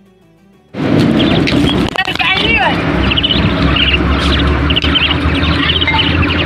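Soft background music, then, under a second in, loud live outdoor sound cuts in: a heavy rumble of wind on the microphone with many birds chirping in short repeated calls, some sliding down in pitch.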